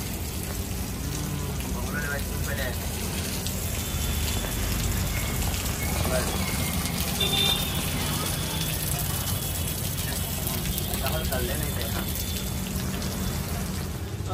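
Heavy rain falling steadily on a street and pavement, an even hiss with no breaks.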